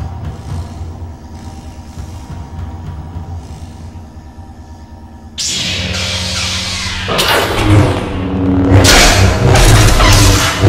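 Film soundtrack: orchestral score, subdued at first. About five seconds in a sudden loud electric buzz cuts in, then the music swells under lightsaber hums, swings and clashes.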